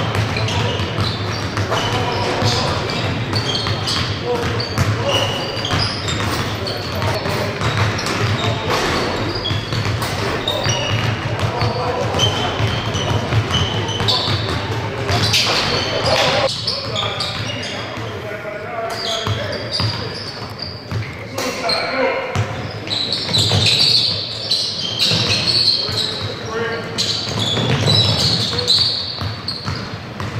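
Several basketballs dribbled and bouncing on a hardwood gym floor in a large, echoing gymnasium, with indistinct voices behind.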